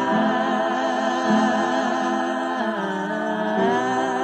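A small group of voices humming a slow hymn in close harmony, unaccompanied, on an old home reel-to-reel tape recording. The notes are long and held, and the chord drops lower for about a second near the end before rising back.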